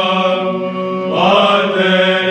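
Orthodox monks singing an apolytikion in Byzantine chant: a melody line over a steady held drone, the ison, with the melody gliding up into a louder note a little past the middle.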